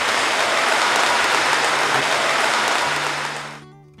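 Audience applauding at the end of a speech, a dense, steady clapping that fades out near the end.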